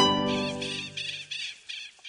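Closing chord of a plucked-string logo jingle dying away, while a run of short high bird chirps, about three a second, fades out.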